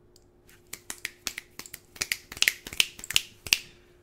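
A run of finger snaps: well over a dozen sharp snaps in about three seconds, unevenly spaced, starting about a second in. A faint steady hum runs underneath.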